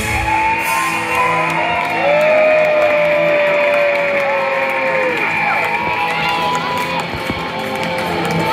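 Live punk rock band at the end of a song: the drums stop right at the start, leaving electric guitars ringing on with long sustained notes that bend in pitch, over a cheering crowd in a large club hall.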